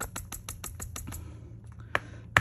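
Diamond painting drills falling through a silicone funnel into a small plastic storage pot, a rapid run of light clicks and rattles, about ten a second, that thins out after about a second to a few single clicks.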